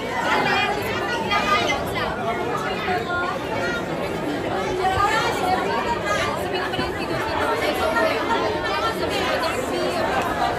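Crowd chatter: many voices talking over one another at a steady level, with no single voice standing out.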